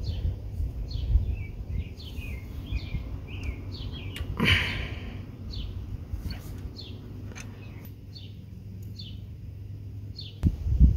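Small birds chirping over and over in short falling chirps, about one or two a second, over a steady low background rumble. A few light metallic clicks and a brief scrape come from a wrench working on a diesel engine's rocker-arm adjusting screw.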